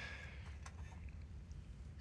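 Quiet background: a faint steady low rumble, with one soft click less than a second in.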